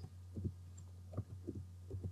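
Computer keyboard typing: about four soft, muffled keystrokes, picked up faintly over a steady low electrical hum from the microphone.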